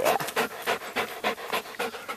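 Dog panting rapidly close by, about six or seven breaths a second.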